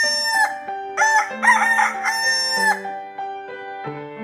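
A rooster crowing twice: a first call ending just after the start, then a second, longer one from about one second in to near three seconds, over soft keyboard music.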